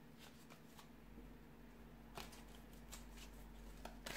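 Faint shuffling of a deck of tarot cards in the hands: a few soft, irregular card clicks and rustles, the clearest a little past halfway, over a faint steady hum.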